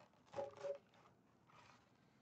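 Clear plastic cover of a collection box being lifted off and handled: two brief, faint plastic creaks a little under a second in, then a softer touch of plastic.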